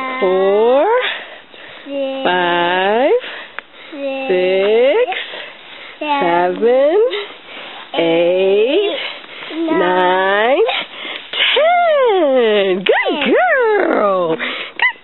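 Sing-song voice calls, about one every two seconds, each swooping down and back up in pitch, in the manner of counting aloud to a toddler; the calls come closer together near the end.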